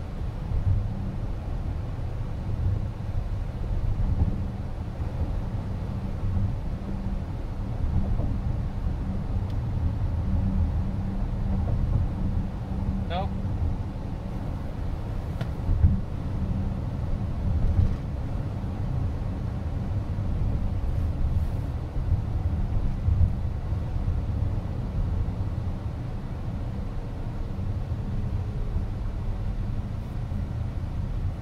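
Road and tyre noise heard inside the cabin of a moving Chrysler Pacifica minivan: a steady low rumble with small bumps. About 13 seconds in comes a brief rising chirp.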